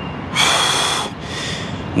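A man's heavy, excited breath into a close microphone: one strong breath under a second in, then a weaker one.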